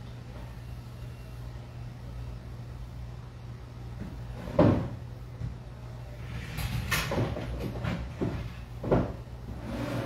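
Hair and felt fabric rustling as a heatless-curl band is unwound from the hair by hand, with a sharp knock about halfway through and more rustling near the end, over a steady low hum.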